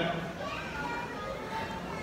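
Faint background chatter of people's voices in a hall, with no nearby speaker.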